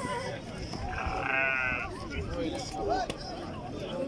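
A quavering animal call about a second in, lasting just under a second, over men talking nearby.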